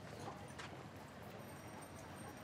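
Faint street background noise with scattered light knocks.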